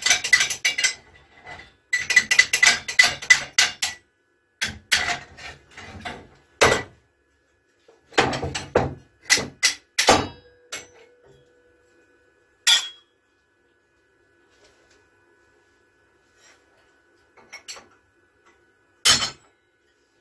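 Steel parts of a gravity boot clattering and clanking while being worked at a hydraulic press and workbench. Two spells of rapid metallic rattling come in the first few seconds, then single clanks. After a quiet stretch there is one last loud clank near the end.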